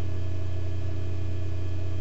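A steady low hum with faint high tones over it, unchanging throughout.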